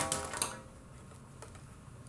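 Plastic handheld microphone of a cassette recorder being handled while its remote switch is checked: a sharp click at the start and a few lighter clicks with a brief ringing tone, then low hiss.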